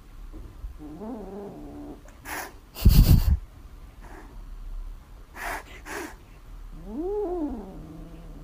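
Cat meowing: a short call about a second in and a longer meow that rises and falls near the end. A few short noisy bursts come in between, and the loudest sound is a thump about three seconds in.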